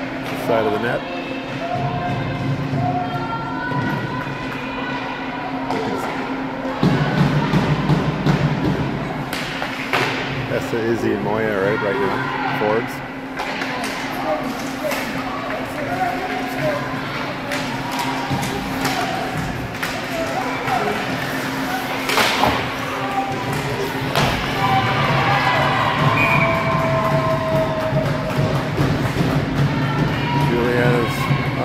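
Ice hockey rink during play: spectators' voices calling out over a steady low hum, with scattered knocks and thuds of sticks, puck and players against the boards, the sharpest about three-quarters of the way through.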